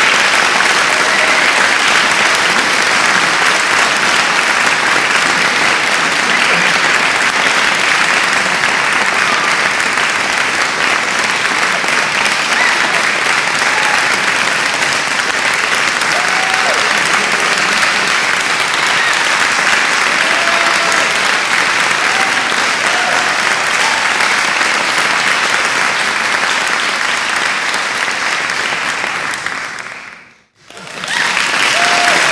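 Crowd applauding steadily, with a few brief voices cheering through it, fading out just before the end.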